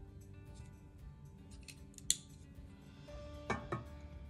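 Soft background music, with a sharp click about halfway through and then two light knocks near the end as a battery-powered wax pillar candle is set down on an etched clear-glass tray.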